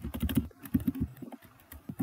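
Typing on a computer keyboard: a quick, uneven run of key clicks, with a short pause a little past the middle.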